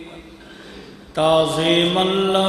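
A man chanting a melodic Arabic recitation, holding long notes with small ornamental turns. He pauses for breath, then comes back on a held note a little over a second in.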